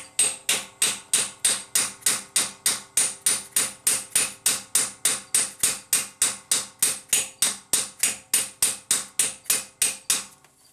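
Hammer tapping lightly and steadily on a steel ball joint cup and plate held against the crankshaft bolt's washer, about four strikes a second, each with a short metallic ring. The taps are driving the Hemi V8's harmonic balancer onto the crankshaft a little at a time.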